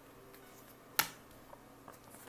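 A single sharp snap about a second in as a tarot card is put down on the tabletop, with only a few faint ticks besides.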